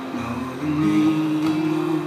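Acoustic guitar played live, its chords ringing and sustaining, with one note held through the second half.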